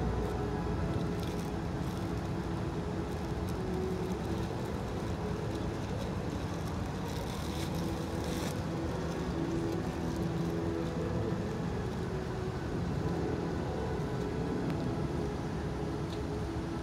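Steady outdoor city ambience, mostly the even rumble of distant road traffic.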